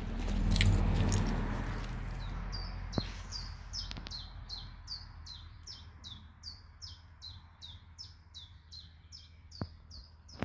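A small songbird sings a long run of short, high, downward-slurred notes repeated evenly at about two to three a second. Its song is preceded by a brief low rumble on the microphone in the first couple of seconds.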